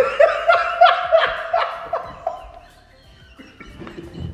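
Men laughing hard, in loud rhythmic bursts about three a second that die down after about two seconds.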